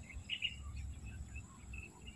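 Faint outdoor ambience of scattered short, irregular chirps from small wildlife, over a low rumble.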